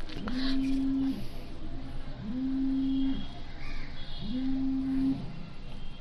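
A low steady buzz in three even pulses, each about a second long and about two seconds apart.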